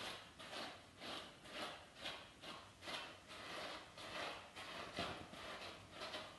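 A dog grooming brush with fine wire pins stroking through a poodle's dense curly coat: faint, even brushing strokes, about two a second.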